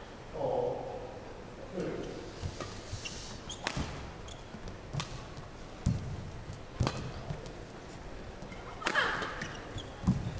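Badminton rally: rackets striking a shuttlecock in sharp cracks about a second apart, with players' footfalls thudding on the court in between. A short burst of crowd noise follows the last hit near the end, as the rally ends with a body smash.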